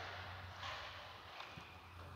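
A few soft footsteps over a steady low hum, quiet overall.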